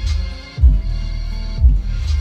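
Bass-heavy music playing loud through a Tesla Model 3's upgraded Hansshow audio system with added amplifier and trunk-mounted subwoofer, heard inside the car's cabin. Deep bass hits land about once a second.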